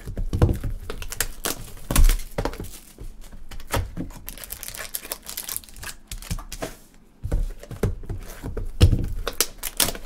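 Foil trading-card pack wrappers and box packaging crinkling and tearing as card boxes are handled and opened, with irregular clicks and rustles throughout. A couple of heavy thumps stand out, about two seconds in and near the end.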